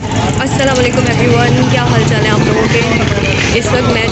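Busy street noise: road traffic running steadily with voices over it, starting suddenly as the intro music ends.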